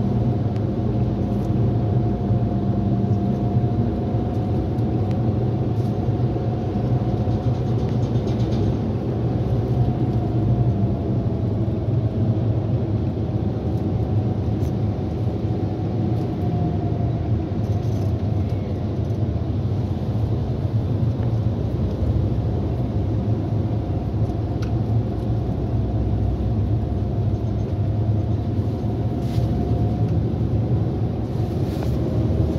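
Steady low rumble of a car moving in slow traffic, heard from inside the cabin: engine and road noise, with a faint whine above it that drifts slowly up and down in pitch.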